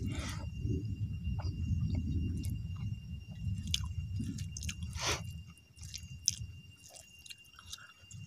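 Close-up chewing of a big mouthful of rice eaten by hand, with wet smacks and clicks from the mouth. The chewing is heavy for about the first five seconds, then quieter.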